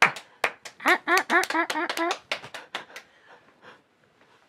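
Hand claps, sharp and separate, with a burst of laughter in short pulses starting about a second in. The claps are scattered and stop about three seconds in.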